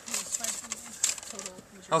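A man's low, wordless murmuring hum under his breath, with faint rustling near the start.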